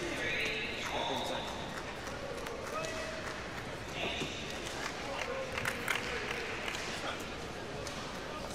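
Indistinct voices over the steady background of a badminton arena hall, with a few brief high squeaks about a second in and again about four seconds in.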